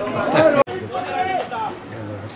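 Indistinct voices of several people talking and calling out at once. The sound cuts out abruptly for a moment about two-thirds of a second in, then the voices carry on more quietly.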